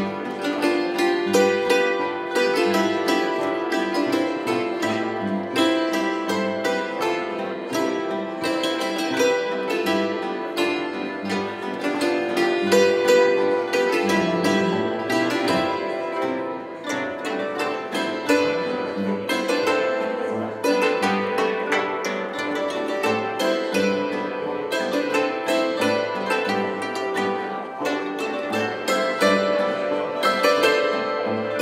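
Live Styrian folk string music (Saitenmusi) with zithers: quick plucked melody and accompaniment that plays on without a pause.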